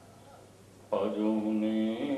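A man's voice through a microphone breaks into a chanted recitation about a second in, holding long, steady notes after a quiet pause.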